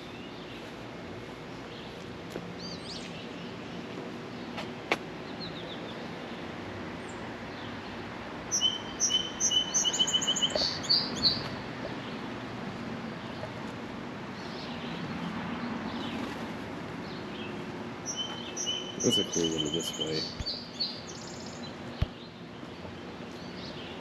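A songbird singing two short phrases of quick repeated high notes, about nine seconds in and again about nineteen seconds in, over steady outdoor background noise.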